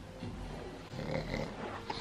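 A pug making short nasal snuffles and grunts, a little louder in the second half.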